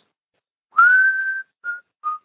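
A person whistling: one note that slides up slightly and is held for under a second, then a second short note.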